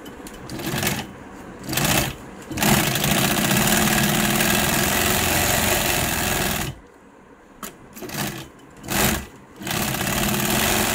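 Industrial sewing machine stitching the leather cover onto a steering wheel rim, run in stops and starts. Two short bursts come first, then a steady run of about four seconds, then two more short bursts near the end.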